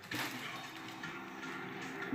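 Faint music playing steadily in the background.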